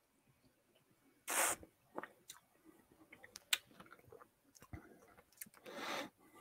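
Faint mouth sounds of a person tasting whisky: a short breathy draw of air about a second in, several small wet clicks and lip smacks, and another breathy draw near the end.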